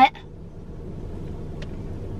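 Steady low rumble of a stationary car idling, heard from inside its cabin, with a faint click about one and a half seconds in.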